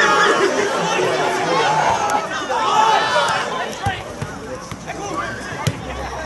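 Football spectators chattering and calling out, several voices overlapping, thinning out about two-thirds of the way through. A few sharp knocks come near the end.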